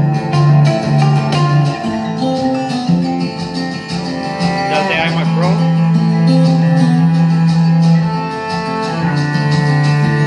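Instrumental music from a video soundtrack, played at high volume through an iMac Pro's built-in speakers, with sustained notes throughout. The volume is very loud. A short wavering, gliding sound rises over the music about halfway through.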